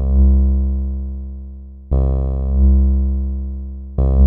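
Korg Volca Drum playing a repeated synth note built from two layers: a bright, buzzy harmonic-rich layer sounds at once, and the deep fundamental swells in a moment later, then the note fades slowly. A new note strikes about two seconds in. The rich layer leads and the fundamental comes in afterwards, so the tone changes over the note, in place of a filter.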